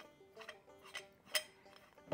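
Light metallic clinks from the steel head and parts of a LEM Big Bite #8 meat grinder being handled and fitted together, with one sharper click a little past the middle, over faint background music.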